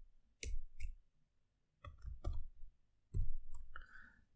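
Computer keyboard keystrokes: three pairs of short clicks, the pairs spaced well over a second apart.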